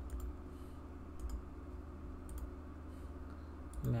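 A few scattered computer mouse clicks over a steady low electrical hum.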